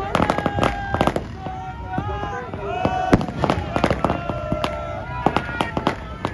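Firecrackers and fireworks going off in a dense, irregular string of sharp cracks.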